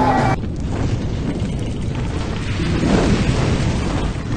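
Rock music cuts off a moment in, giving way to a deep rumbling sound effect from an animated fiery logo sting, swelling about three seconds in.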